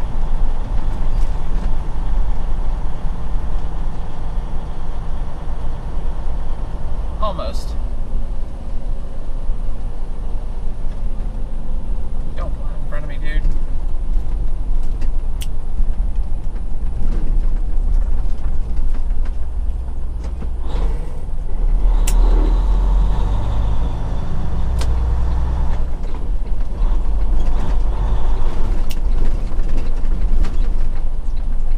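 Detroit DD15 inline-six diesel of a 2016 Freightliner Cascadia, heard from inside the cab, running steadily at low city speed with light cab rattles and creaks. The engine note grows louder for a few seconds past the middle as it pulls harder.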